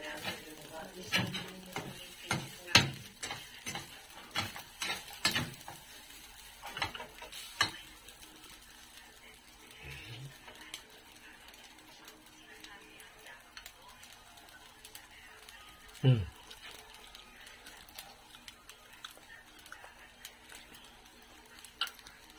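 A non-metal spatula stirring and tossing fried rice in a stainless steel pan: a quick run of soft scrapes and taps against the pan for the first eight seconds, then quieter, sparser stirring. One louder single knock comes about sixteen seconds in.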